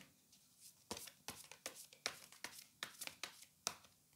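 Tarot cards being shuffled by hand: a faint, irregular run of quick card snaps and clicks.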